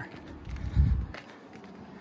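A single dull low thump about a second in, with a few faint light ticks around it, from footsteps while walking across concrete.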